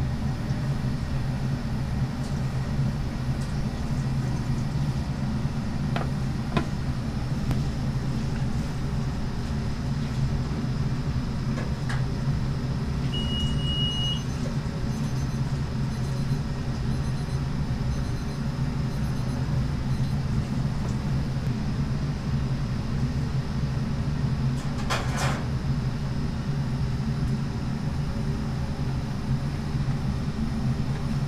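Steady low mechanical hum of kitchen machinery running throughout. A short high electronic beep sounds about 13 seconds in, and a few light clicks and clatters come at intervals.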